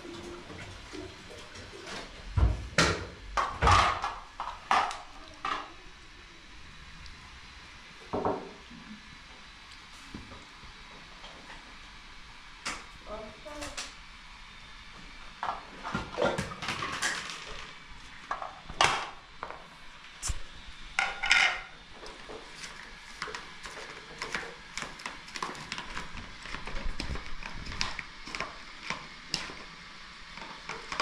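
Scattered clinks and knocks of dishes and metal utensils on a tiled floor, with brief voices now and then.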